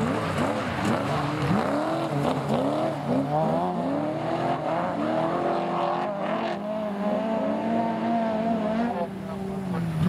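Several Class 3 autograss racing cars' engines revving hard on a dirt track, their pitch sweeping up and down over and over, then one note held steady at high revs through the second half.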